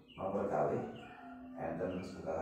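Speech only: a man talking into a microphone, drawing out one held sound near the middle.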